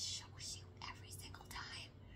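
A woman whispering a short phrase, a few breathy unvoiced words with no pitched voice.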